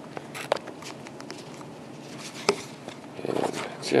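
A few sharp clicks and knocks of hard plastic being handled: the radio's battery pack with its screwed-on belt clip. One click comes about half a second in and a louder one about two and a half seconds in.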